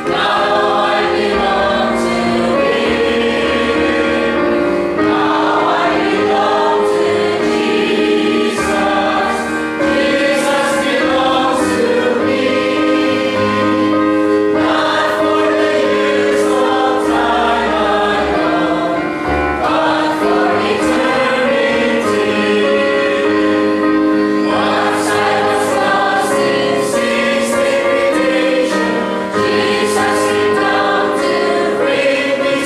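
Congregation singing a hymn together to electronic keyboard accompaniment, in long held notes with the chords changing every second or two.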